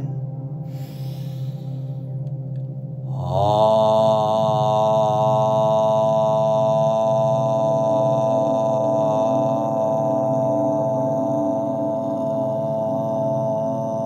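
A breath drawn in, then about three seconds in a single voice chants a long, steady "Om", held unbroken to the end, over soft meditation music with a low drone.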